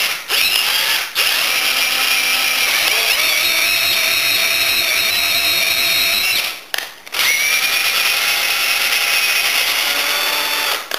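Cordless drill/driver running a 14 mm flat spade bit into green hazel wood to bore a recess, its motor whine broken by short stops about a second in and near seven seconds, with a shift in pitch about three seconds in.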